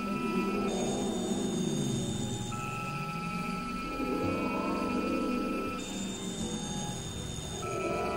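Experimental electronic drone music made with synthesizers: layered sustained tones, with warbling, wavering mid-range tones underneath and thin steady high tones that switch in and out every couple of seconds.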